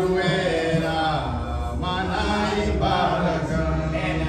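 Voices singing a slow hymn with long held notes, amplified through microphones.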